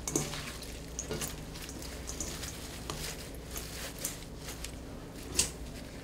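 Quiet kitchen handling sounds: perilla leaves rustling as they are layered in a stainless steel bowl, with scattered light clicks of a utensil against the bowls as red chili seasoning sauce is added.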